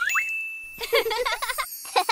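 Cartoon chime sound effect: a tone rises and settles on a held ding, then gives way to a quick string of short bright tinkling notes.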